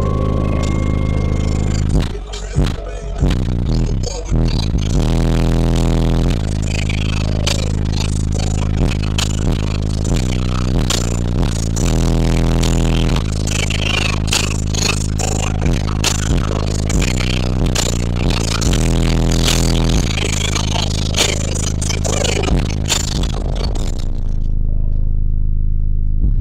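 Bass-heavy music played very loud through a car audio system of six 18-inch subwoofers, with rattling and crackling over the deep bass notes. The crackle stops about two seconds before the end, leaving the bass.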